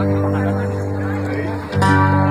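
Live music from an outdoor stage sound system: held chords ringing steadily, changing to a new chord near the end.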